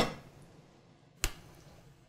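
Two sharp clicks a little over a second apart: a spoon knocking against a pan while meat sauce is spooned out.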